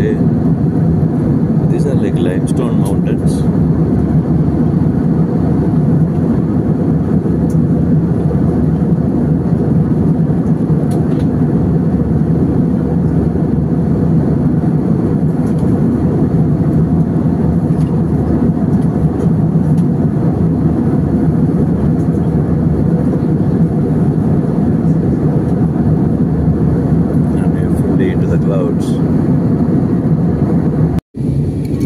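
Steady drone of an airliner's jet engines and rushing airflow heard from inside the passenger cabin in flight.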